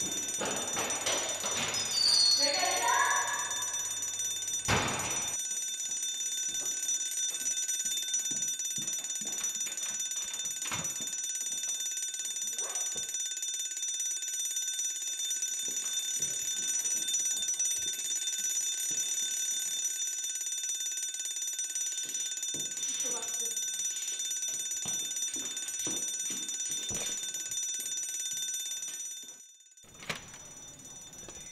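School alarm ringing steadily as several high, continuous tones, cutting off about a second before the end. About two seconds in, a voice cries out with a rising pitch.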